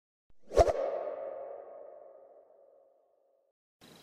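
An added sound effect: a sudden swoosh and hit about half a second in, followed by a single ringing tone that fades away over about three seconds.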